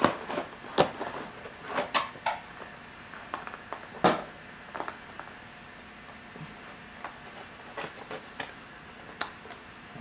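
Scattered light clicks and taps of plastic packaging being handled while a boxed diecast model airliner is opened.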